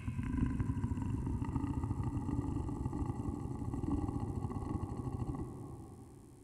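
Dark ambient drone: a dense, low rumble with faint steady high tones above it, fading down over the last second.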